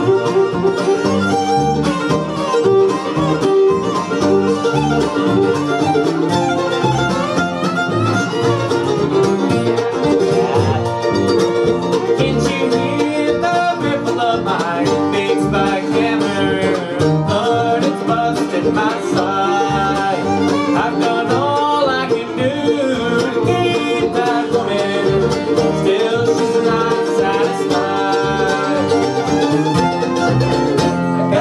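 Live acoustic bluegrass band playing: fiddle, mandolin, acoustic guitar and upright bass.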